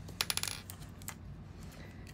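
A gel pot being picked up and its screw lid twisted off: a quick run of small hard clicks lasting about half a second, a moment in.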